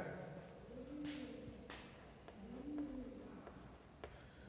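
A pigeon cooing faintly: two soft, low hoots that rise and fall, about a second in and again near three seconds. Two faint scratches of chalk on the blackboard come between them.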